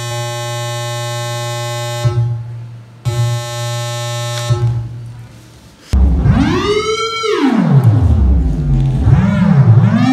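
Willpower Theremin, a software oscillator whose pitch and volume follow hand movements over infrared sensors, sounding through a loudspeaker. First a steady held tone breaks off, returns and fades away; then at about six seconds a louder tone starts, sliding up and down in pitch in long glides.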